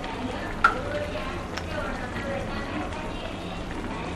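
Faint, steady hiss of chicken gravy cooking in a pan on the stove, with a couple of light clicks and a faint voice in the background.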